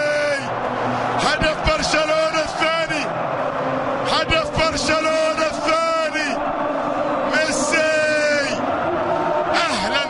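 A football commentator's excited, drawn-out shouts, several in a row with falling pitch, over a stadium crowd cheering a goal.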